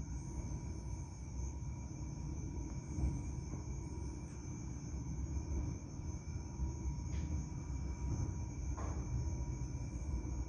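Steady low rumble of room noise with faint, steady high-pitched tones, and a couple of faint brief sounds near the end.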